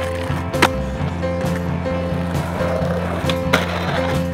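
Skateboard clacks and grinding over a music track: sharp snaps of a board hitting concrete right at the start, about half a second in and again near the end, with the gritty scrape of metal trucks grinding along a concrete ledge in between.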